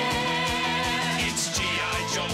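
Upbeat rock song played by a band: a steady drum beat under held, wavering pitched lines from guitar or voice.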